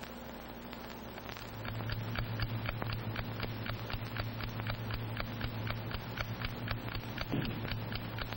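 Mechanical alarm clock ticking steadily, about four ticks a second, fading in over the first second or two, over a steady low hum.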